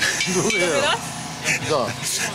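Speech: a man's voice talking, with no other clear sound.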